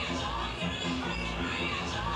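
Music with a steady bass beat and a voice over it.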